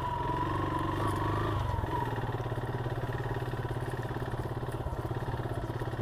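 Motorcycle engine running at low speed, the revs easing off about two seconds in and settling into a low, even beat.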